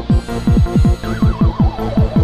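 Electronic music: a kick drum with a falling pitch hits about four times a second under a steady synth backing. From about a second in, a high wavering sound slides downward, whinny-like.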